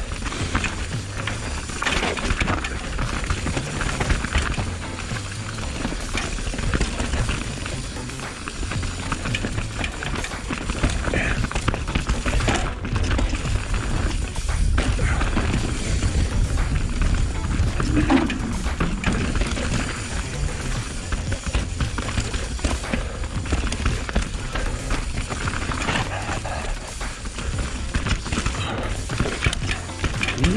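A full-suspension mountain bike riding down a rough dirt singletrack: tyres rolling over dirt, roots and rocks, with the bike rattling and clattering over bumps and a steady wind rumble on the microphone.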